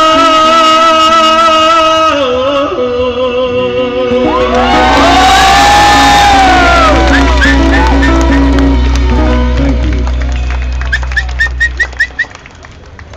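A live band ends a song: a long held sung note over guitar, then a final chord rung out with drums, cymbals and deep bass, while the crowd whoops and cheers. Scattered clapping comes near the end.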